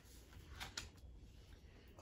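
Near silence: room tone, with a faint brief rustle of a paper book page being handled a little over half a second in.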